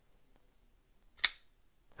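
A Reate K1 titanium framelock flipper knife is flicked open off its stiff detent, and the blade snaps against its stop with one sharp click a little over a second in.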